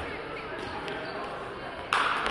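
Voices chattering in a large, echoing gym hall, with a few light taps and one sharp thump near the end as a player kicks the shuttlecock in a feather-shuttlecock rally.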